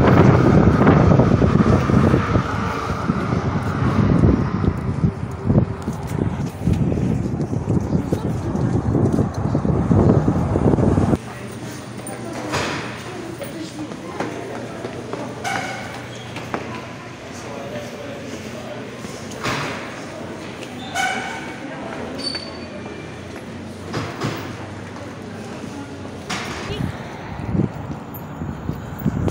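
Wind buffeting the microphone for about the first eleven seconds, stopping suddenly when the recorder moves indoors. After that comes a quieter indoor background with a low steady hum, scattered short knocks and faint voices.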